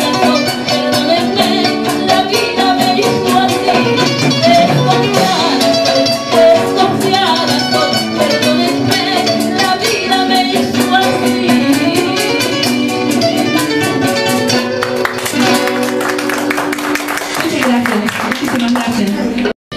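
Live Ecuadorian rockola band: a woman singing over plucked guitars and timbales/percussion playing a steady rhythm.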